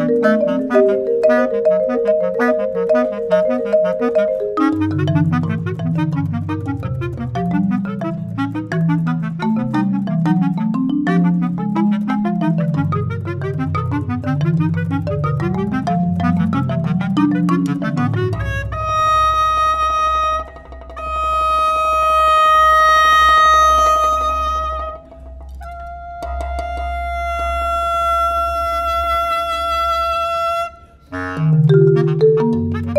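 Contemporary chamber music for bass clarinet and marimba. For about eighteen seconds the marimba plays a fast, even stream of mallet notes over a moving bass line. The music then changes to long sustained high notes, held with two short breaks, over a deep low tone.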